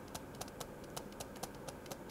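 Faint light ticks of a stylus on a pen tablet during handwriting, about four a second.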